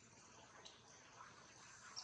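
Near silence: faint outdoor background hiss with one faint high tick.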